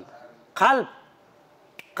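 A man says one short word, then after a quiet pause a single sharp finger snap comes near the end.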